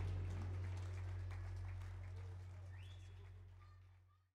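A low steady hum from the stage sound system left after the band's last note, under faint outdoor ambience, with a brief rising high chirp about three seconds in; everything fades out toward the end.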